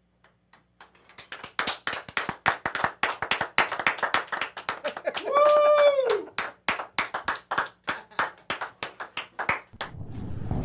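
Hand clapping, about five claps a second, starting about a second in and stopping just before the end. Midway, a voice gives one short whoop that rises and falls in pitch.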